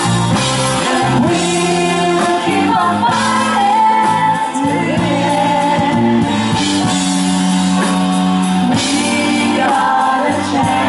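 A live band playing a rock song, with a woman singing lead over backing vocals and drums, loud and continuous with long held sung notes.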